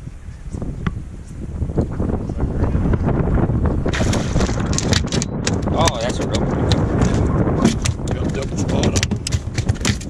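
Wind buffeting the microphone, then from about four seconds in a rapid, irregular run of slaps and knocks as a landed redfish flops on the boat deck.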